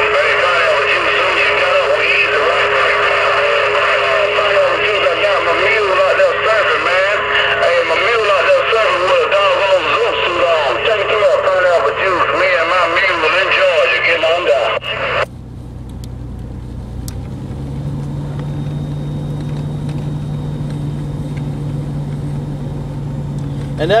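Audio from a Uniden HR2510 10-metre radio transceiver: a thin, band-limited, warbling voice-like transmission with no clear words, which cuts off suddenly about 15 seconds in. After it, a steady low hum.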